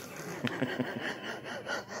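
A man laughing quietly to himself: a run of short, breathy chuckles, about six a second.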